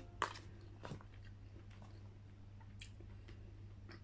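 Faint eating sounds: fingers tearing grilled chicken and touching an aluminium foil tray, with scattered small clicks and taps, the sharpest just after the start and another about a second in.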